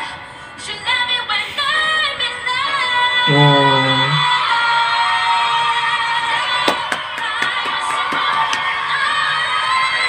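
A young woman singing with piano accompaniment, holding long notes with vibrato. About three seconds in a lower-pitched voice sounds briefly, and a few sharp clicks come later on.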